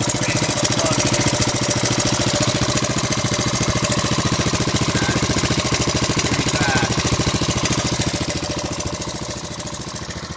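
1985 Honda ATC 250SX three-wheeler's air-cooled four-stroke single-cylinder engine running steadily at idle, easing slightly quieter near the end.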